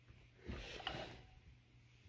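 Faint handling noise of an electric guitar being lifted and turned over: a brief soft bump and rustle about half a second in.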